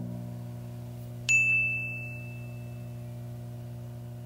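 End-card sound effect: a sustained low chord fading slowly, with a single bright bell-like ding about a second in.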